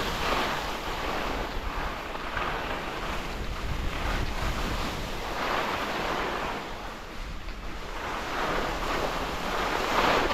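Wind rushing over the camera microphone with the hiss and scrape of skis carving across firm snow, swelling and fading every few seconds as the skier turns.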